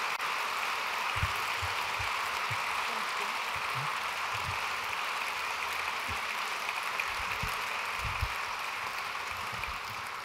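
Audience applauding: a steady, even clapping that eases off near the end.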